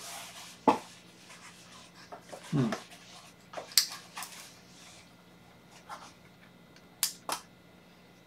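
A few short, sharp clicks and knocks of small objects being handled on a desk: one just under a second in, two around the middle and two close together near the end. A man gives a brief "hmm" about two and a half seconds in.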